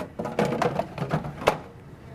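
A faint, low murmuring voice, then a single sharp click about one and a half seconds in.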